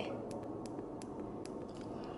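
A few faint, scattered clicks over low hiss as a small LED ring light is handled.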